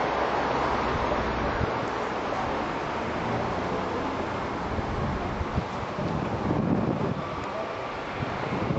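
Steady rushing noise with a fluctuating low rumble: wind buffeting a handheld camcorder's microphone over street ambience.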